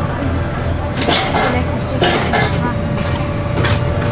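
A children's amusement ride in motion, heard from a rider's seat: a steady low rumble with a thin steady hum, and short rushing sounds about one, two and three and a half seconds in.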